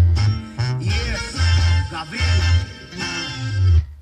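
Music broadcast by FM station 91.9 (XHSS-FM) playing on the radio, with a heavy bass line and guitar. It cuts off suddenly just before the end as the tuner moves off the station to 92.1.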